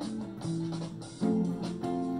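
Hollow-body archtop guitar playing a few chords in turn, each struck and left to ring, with no singing over it.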